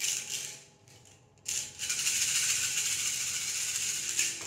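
Small divination pieces being shaken in cupped hands. There is a short rustle at first, then about a second and a half in a steady rattling begins and keeps going as the hands shake them for a cast.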